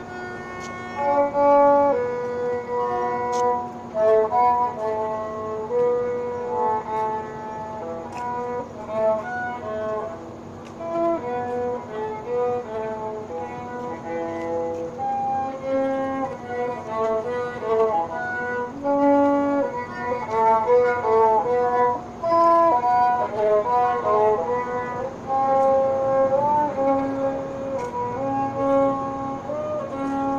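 Violin playing a melody of separate notes with occasional slides, over a steady low tone.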